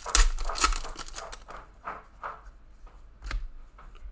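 A trading-card pack wrapper being torn open and crinkled by hand, loudest in the first second. Lighter rustles and clicks follow as the cards are handled.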